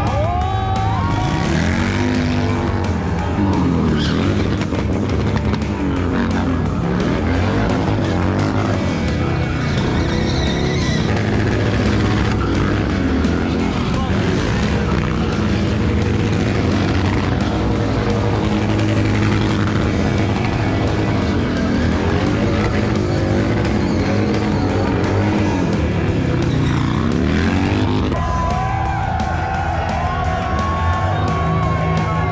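Cruiser motorcycle engine revving up and down again and again during a burnout, with tyres skidding on asphalt, under music.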